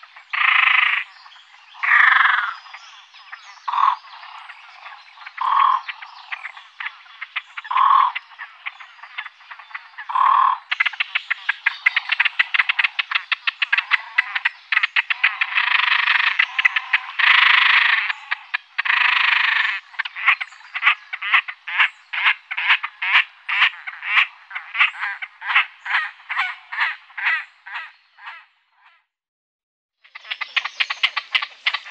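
Great crested grebe calling: separate croaking calls about every two seconds, then, from about a third of the way in, a fast run of rattling notes with longer calls among them, settling into a steady series of two or three notes a second that stops shortly before the end.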